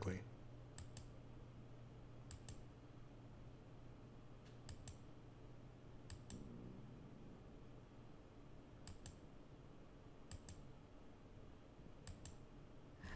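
Faint computer mouse clicks, each a quick double click of button press and release, about six of them spaced a second or more apart, over a low steady hum. They are the clicks of playing and pausing an animation every few seconds.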